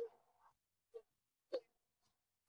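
Near silence, broken by four faint, very short sounds about half a second apart.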